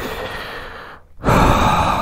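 A man breathing out heavily twice: a long breath that fades away, then a louder one starting a little past a second in.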